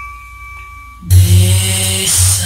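Recorded music: a soft held high note fades away, then about a second in the full arrangement comes in loudly with a deep bass line.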